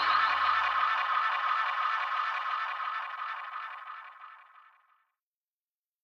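The last notes of a reggae track ringing out in an echo tail after the band stops, fading away over about four seconds.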